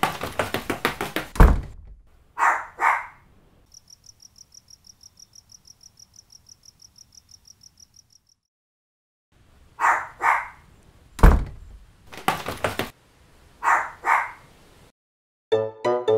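Cartoon sound effects: a quick run of thuds, then a dog barking twice. Crickets chirp steadily for about four seconds, then after a short silence come two more double barks with thumps between them. Music starts near the end.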